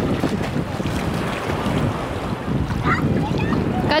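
Sea water sloshing and lapping at the surface, close to the microphone, with wind buffeting the microphone: a steady noisy wash.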